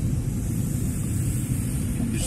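Steady low rumble of a car in motion heard from inside the cabin: engine and tyre noise on a wet road.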